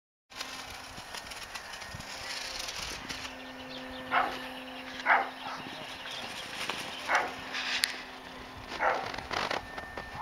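A dog barking: four short single barks, one to two seconds apart, over steady outdoor background noise.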